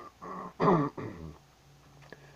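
A man clearing his throat: three quick rough rasps over about a second, the middle one loudest.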